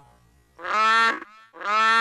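Two short, buzzing pitched sounds about a second apart, each lasting about half a second. They come from an effect-processed sound-effect track.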